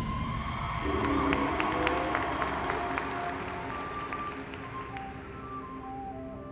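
High school marching band playing a quiet passage as a loud chord dies away: a held low wind chord under a steady ticking from the percussion, about three or four ticks a second, with short higher notes coming in over the second half.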